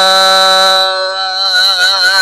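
Gurbani kirtan: a singer holds one long, steady sung note at the end of a line of the shabad. The pitch starts to waver slightly in the last half second.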